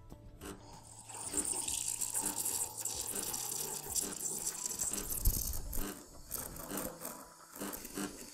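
Espresso machine steam wand frothing milk in a stainless steel pitcher: a steady hiss starts about a second in, with irregular crackling and rattling as the milk foams. A low hum from the machine runs under the first few seconds.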